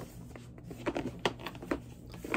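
A 12-inch record jacket being handled and held up: a few soft clicks and rustles of the cardboard sleeve in the hands.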